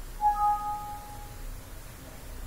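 Windows 7 system alert chime: two bright notes, a lower then a higher, ringing out and fading over about a second. It is the sound played when a warning dialog pops up.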